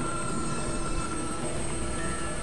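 Experimental synthesizer drone: a dense, even wash of noise with a few thin high tones held steady over a heavy low end.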